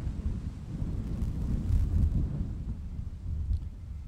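Wind buffeting an outdoor microphone: an uneven low rumble that swells and falls back in gusts.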